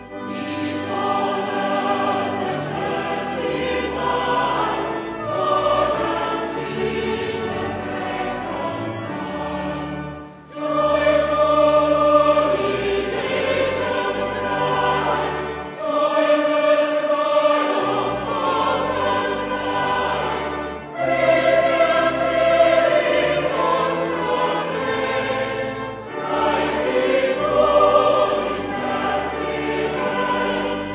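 Choir singing a Christmas carol, sustained notes in several voices with brief pauses between phrases.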